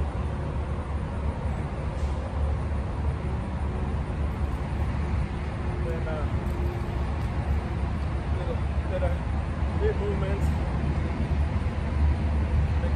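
Steady low rumble of interstate highway traffic, even in level throughout.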